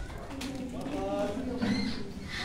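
Indistinct voices of a gathering of people, talking with no clear words.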